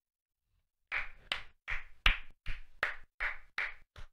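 One person clapping their hands in a steady rhythm, about three claps a second, starting about a second in.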